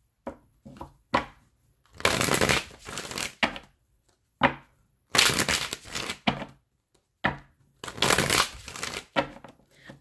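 A tarot deck being shuffled by hand, in three rustling bursts of about a second each with light clicks and taps of the cards between them.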